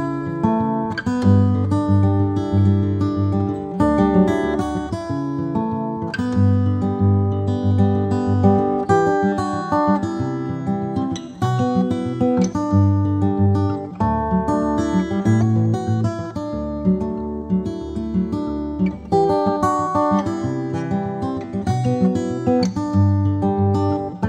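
Background music: acoustic guitar strumming a steady, rhythmic tune.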